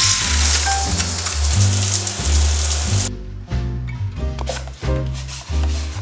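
Shower spray running, a steady hiss, over background music with a deep bass line; the spray cuts off suddenly about three seconds in, leaving the music.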